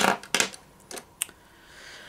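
Plastic eyeliner pens clicking against each other and tapping down on a hard tabletop as they are set into a row: a quick run of sharp clicks in the first second and a half, the first the loudest.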